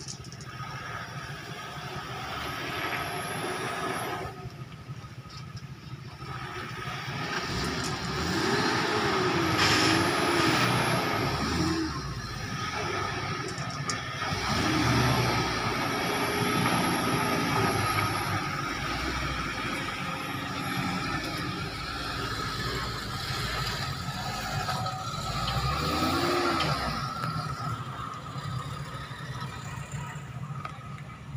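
Pickup truck engine running under load and revving up and down in repeated swells as the truck labours through deep mud.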